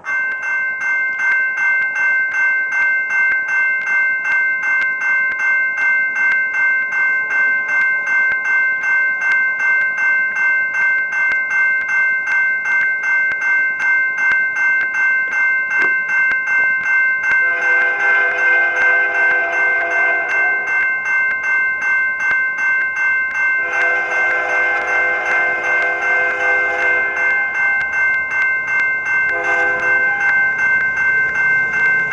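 Level-crossing warning bell ringing in a fast regular rhythm. An approaching Canadian Pacific freight locomotive sounds its multi-note horn for the crossing: two long blasts starting about 17 and 24 seconds in, and a third beginning near the end.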